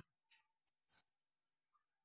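Near silence broken by a few faint, brief clicks, the sharpest about a second in.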